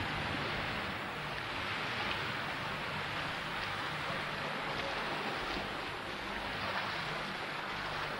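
Sea waves washing in a steady, even hiss, with no single breaker standing out.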